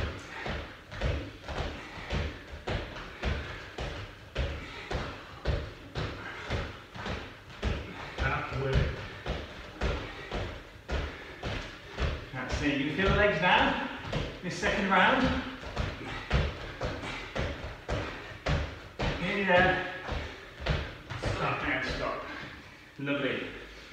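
A steady thudding beat, about two thuds a second, with a few short bursts of a man's voice.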